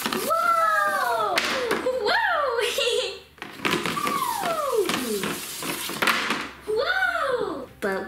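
A voice giving four long gliding 'whee'-like cries, each swooping up and then falling in pitch, the third a long drawn-out fall, as plastic slime eggs are sent down a toy spiral slide.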